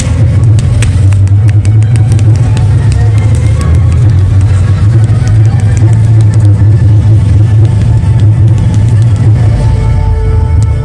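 Fireworks going off in a dense run: many sharp cracks and bangs over a constant deep rumble, with show music playing along.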